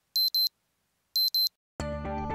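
Electronic beeping in quick pairs of short, high beeps, one pair about every second, twice. Music with guitar comes in near the end.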